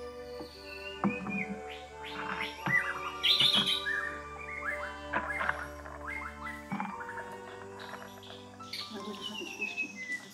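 Small birds chirping repeatedly over soft, sustained background music; the music's low tone drops out about two-thirds of the way through.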